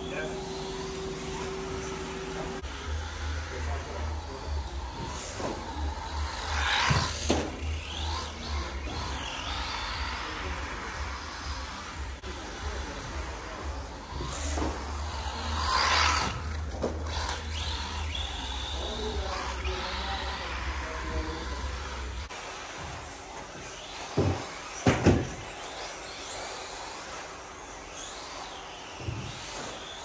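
Tamiya TT-02 electric radio-controlled car running laps on a carpet track, its motor whining up and down with the throttle. A few sharp knocks come near the end.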